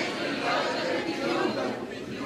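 Many voices of a large group of graduates reciting the graduation oath together from printed sheets, not quite in unison, so the words blur into a dense crowd murmur echoing in a large hall.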